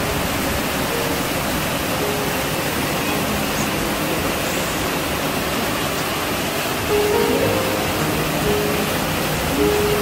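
A steady rushing hiss that does not change, with a few faint pitched notes in places, most of them in the second half.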